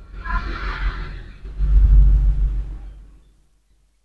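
Hands rubbing the hair and scalp during a head massage: a rustling swish for the first second and a half, then a loud low rumble that fades out about three seconds in.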